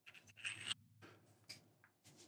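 Faint handling noise from a metal light-stand clamp being turned over in the hands: a short scrape about half a second in and a single small click about one and a half seconds in.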